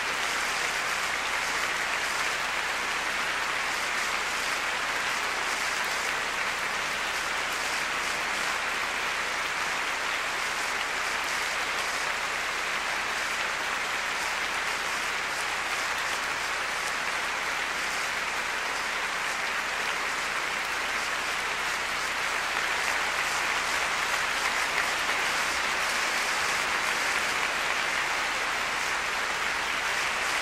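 Large concert-hall audience applauding steadily in a long ovation, growing a little louder near the end.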